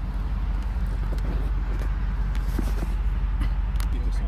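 Car engine idling: a steady low rumble, with a few faint ticks over it.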